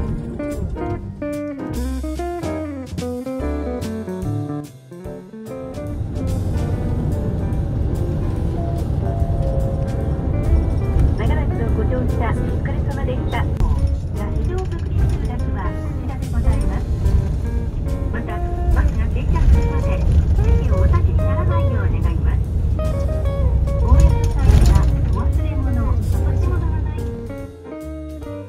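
Guitar background music for the first few seconds, then the steady low engine and road rumble inside a moving highway coach, with a voice speaking over it. Music returns near the end.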